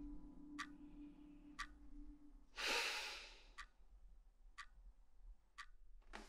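A wall clock ticking, one tick a second, with a man's long sigh about two and a half seconds in, the loudest sound. A low held musical note stops just before the sigh.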